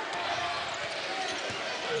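A basketball being dribbled on a hardwood court, under steady noise from an arena crowd.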